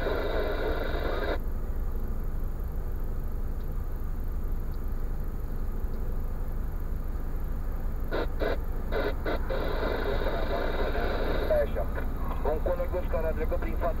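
Steady low hum inside a stationary car's cabin, with a voice talking at times over it. A quick run of clicks about eight seconds in.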